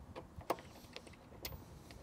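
A few faint, short metallic clicks of a bolt and washer being fitted and hand-started into a motorcycle handlebar mount, the sharpest about half a second in.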